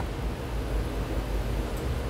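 Steady background noise: a low rumble under an even hiss, with no distinct events.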